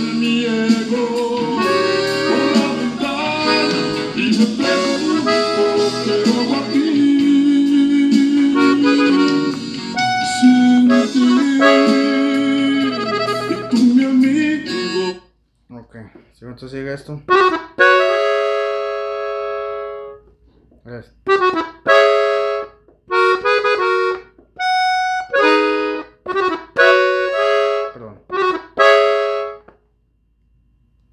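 A band recording of the song plays for about the first half, then cuts off abruptly. After that, a Gabbanelli button accordion tuned in E plays short phrases and chords alone, stopping and starting with gaps between them.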